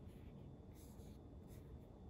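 Near silence: faint room tone, with a faint brief rustle or two.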